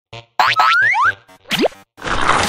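Cartoon-style editing sound effects: a short voice clip saying "mm, yummy", then quick upward-sliding boing tones, the last one sweeping steeply up about one and a half seconds in.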